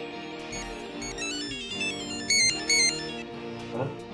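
A mobile phone's melodic ringtone, quick high notes stepping up and down, plays over soft background music. Its two loudest notes come about two and a half seconds in.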